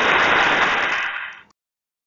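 Applause sound effect: a steady clapping noise that fades and cuts off suddenly about one and a half seconds in.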